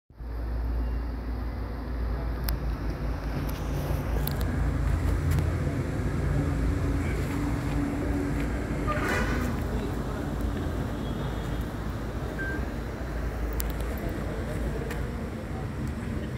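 A steady low rumble of vehicle and traffic noise, with indistinct voices in the background and a few sharp clicks.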